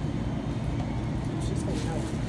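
Steady low rumble of room noise, with faint voices in the background.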